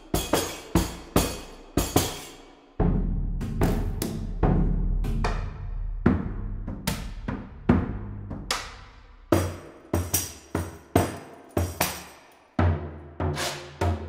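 Sampled drums from the Orcophony library, played with various beaters and techniques: single drum hits one after another, each ringing out. From about three to six seconds in, a deep low rumble builds under the strikes, and near the end the hits come in a quicker pattern.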